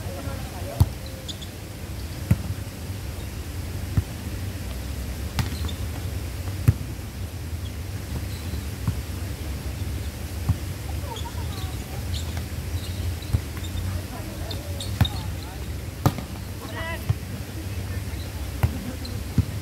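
A volleyball being played back and forth: sharp single smacks of hands and forearms on the ball, every second or few, over a steady low background rumble. Players' voices call out now and then.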